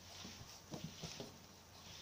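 Faint soft taps of a baby's hands on a wooden floor, a few in quick succession about a second in.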